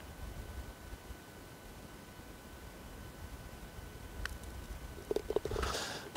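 Low wind rumble on the microphone, with a single light click about four seconds in, from a short putt on a frosty green, and a brief low murmur near the end.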